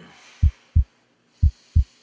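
A low thumping beat in heartbeat-like pairs, about one pair a second, twice in these seconds.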